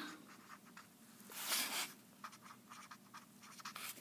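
Marker pen writing on paper: faint scratching strokes, with one longer, louder stroke about a second and a half in.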